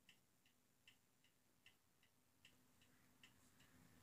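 Near silence with faint, evenly spaced ticking, about two and a half ticks a second, alternating stronger and weaker.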